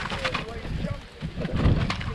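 Wind buffeting the microphone outdoors, rising to a louder low rumble near the end, with light rustling in the undergrowth.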